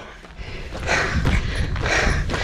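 A man breathing hard after a steep climb, with two heavy breaths, one about a second in and one near the end. Wind rumbles on the microphone throughout.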